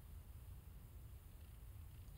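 Near silence: only a faint, steady background hiss.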